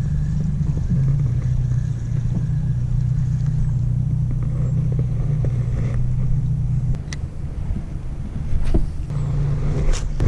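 Boat motor running with a steady low drone, dropping in level about seven seconds in, with a couple of sharp knocks near the end.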